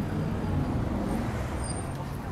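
Street traffic: a motor vehicle's engine running close by, a steady low rumble.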